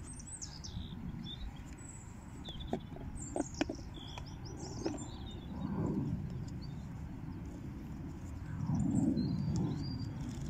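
Small birds chirping repeatedly in short high calls, over a low background rumble that swells twice, once about six seconds in and again near the end. A few sharp clicks come about three seconds in.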